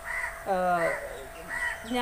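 A bird calling in short harsh calls, repeated about every half second to second, with a woman's voice briefly in between.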